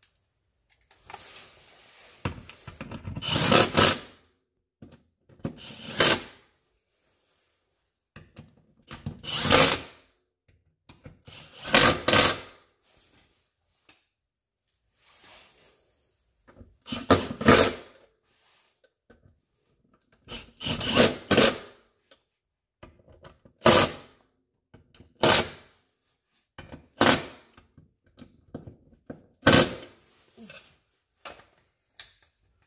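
Small handheld cordless power tool run in about ten short bursts of a second or two each, with pauses between, driving in the transmission crossmember bolts.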